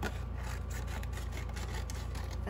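Paper and cardboard being handled on a work table: light rustling and scraping with a few faint clicks, over a steady low hum.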